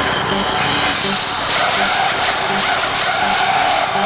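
Industrial techno track playing loud and steady, with a regular low pulse; about a second in, a bright, fast layer of high percussion comes in over it.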